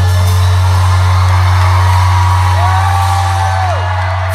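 Live rock band holding a closing sustained chord, a deep bass note ringing steadily under it. A single long note slides up, holds and falls away near the end.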